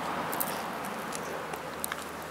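Steady hiss of distant road traffic heard through the thick brick walls of the warehouse, with a few faint clicks.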